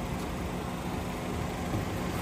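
Honda Civic 1.8 i-VTEC four-cylinder engine idling steadily, a low even hum.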